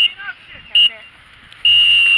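Referee's whistle blown three times: two short blasts, then a long one near the end, signalling the end of the game.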